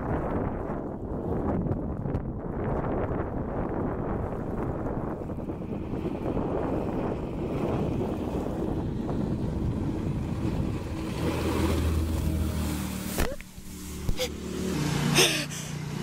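Jet boat with a Berkeley jet pump running on the river, its jet wash and engine heard under wind noise on the microphone, with a low steady hum coming in about two-thirds of the way through. Near the end its wake washes up onto the shore in several splashes.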